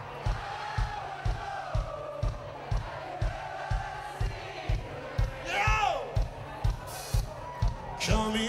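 Live band's kick drum keeping a steady beat, about two thumps a second, under a cheering, shouting crowd. One long falling whoop a little past halfway.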